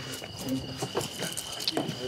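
Night insects, crickets, trilling in one steady high pitch, with a few scattered footstep clicks and snatches of low voices.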